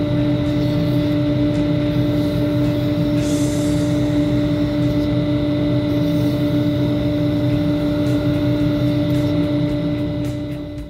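Wood lathe running at steady speed with a constant motor hum, while a burn wire is pressed into the spinning handle's grooves to scorch lines; a brief higher hiss about three seconds in.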